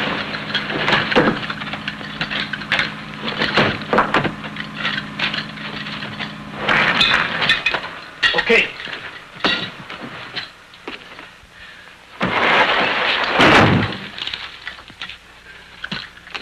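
Repeated heavy blows of a makeshift battering ram against a locked freezer door: irregular thuds and bangs, with a loud crashing burst about twelve seconds in. A low steady hum runs under the first half and stops about seven seconds in.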